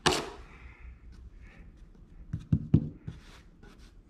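A drywall taping knife scraping briefly through joint compound over paper tape in a ceiling corner, then faint ticks and two dull knocks close together a little past halfway.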